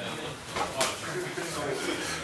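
Indistinct men's voices, with one sharp slap a little under a second in.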